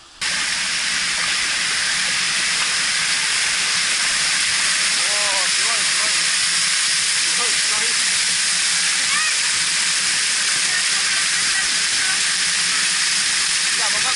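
Water showering down from a splash play structure's sprays in a steady, loud hiss that cuts in abruptly at the start. Faint children's voices are heard through it.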